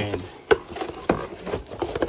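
Cardboard box and packaging being handled while a cordless die grinder is taken out: a sharp knock about half a second in, another just after a second, and lighter taps and rubbing between.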